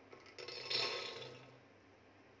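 Chickpeas poured from a bowl into an empty aluminium pressure cooker, clattering onto the metal bottom. The clatter starts about half a second in, swells and fades out within about a second.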